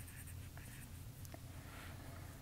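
Faint stylus strokes and light taps on a tablet's glass screen as handwriting is written.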